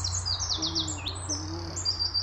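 Songbird singing in woodland: quick runs of high, downward-sliding notes that go on without a break.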